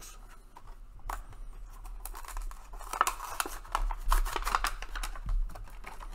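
Plastic blister and cardboard backing card of a small toy-car package being pulled open by hand: a dense run of crackles and clicks that starts about a second in and is busiest in the middle.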